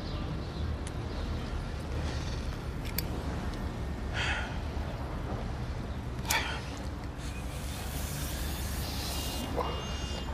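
Low, steady rumble inside a car's cabin. A faint click comes about three seconds in, short breathy hisses around four and six seconds, and a longer hiss near the end.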